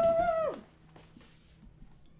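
A man's voice holding a long, high 'boooo' call that bends down and cuts off about half a second in, then quiet room tone with a few faint ticks.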